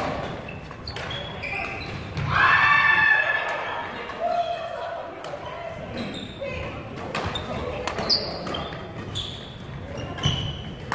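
Indoor badminton doubles rally: repeated sharp clicks of rackets striking the shuttlecock, short high chirps of sneakers on the wooden court, and players' voices, echoing in a large hall. The loudest moment is a held high-pitched sound lasting under a second, about two and a half seconds in.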